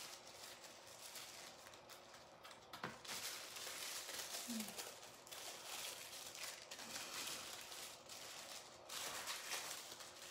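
Faint, uneven rustling and crinkling of thin tissue paper as it is handled and lifted from a book of metallic leaf sheets.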